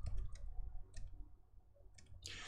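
Computer mouse clicking: a quick run of clicks in the first half-second and one more about a second in.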